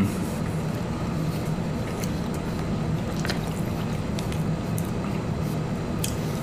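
People chewing soft pimento cheese sandwiches, with wet, squishy mouth sounds over a steady low background hum and a few faint clicks.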